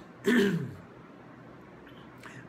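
A man briefly clears his throat, a short vocal sound falling in pitch, followed by quiet room tone.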